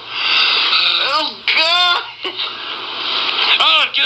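A man crying out in distress after a neti pot nasal rinse: a harsh breathy noise for about the first second, then high, wavering wailing cries, and another cry near the end.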